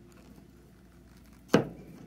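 Soft handling of yarn on a plastic knitting loom, then a single sharp knock about one and a half seconds in as the metal loom hook is set down on the cutting mat.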